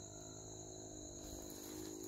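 Steady, high-pitched insect chorus made of two unbroken shrill tones, with a faint low hum underneath.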